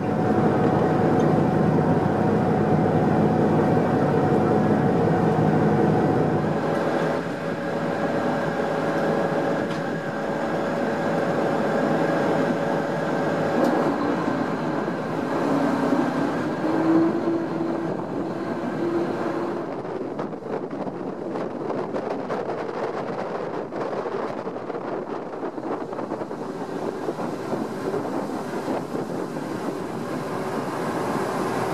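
Harbour ferry engines running with a steady drone over rushing water and wind; the low rumble drops away about six seconds in.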